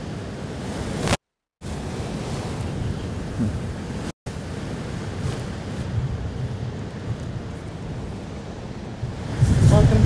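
Steady wind rumble on the microphone with ocean surf behind it. The sound cuts out completely twice: for a moment about a second in, and very briefly about four seconds in.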